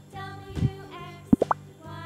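Children's background music with cartoon 'pop' sound effects: a short falling tone about half a second in, then three quick rising pops in a row a little past the middle.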